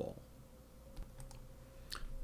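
A few faint clicks about a second in and again near the end, over quiet room tone with a faint steady hum.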